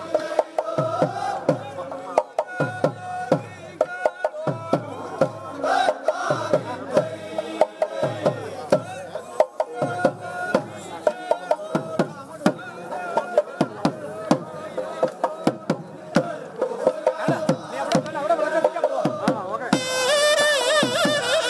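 A group of men singing a chant in chorus to a deep drum, struck roughly once a second, with the hubbub of a crowd around them.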